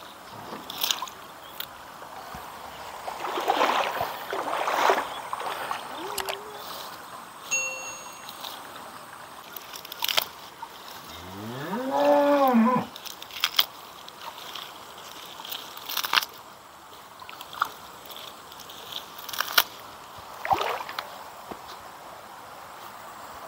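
A cow mooing once, a single long call that rises and then falls, about eleven seconds in. Around it are small splashes and rustling from hands picking watercress in a shallow stream.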